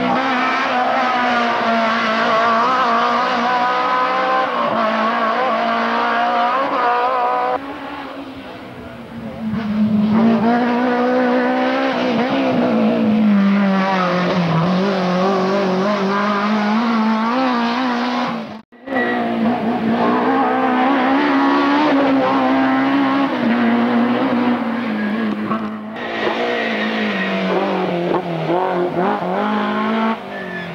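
Rally cars driven hard on a tarmac stage, their engines revving up and down as they change gear through the corners, heard over several separate shots that cut suddenly a few times. The first car is an E30 BMW M3 with its four-cylinder engine.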